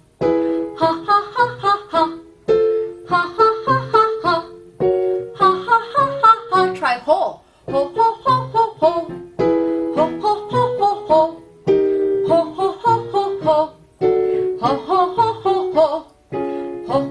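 A woman singing a staccato vocal warm-up on short, detached 'ha' notes, accompanied by digital piano chords. Each phrase opens on a held piano chord, followed by a quick run of short sung notes, and the pattern repeats about every two and a half seconds.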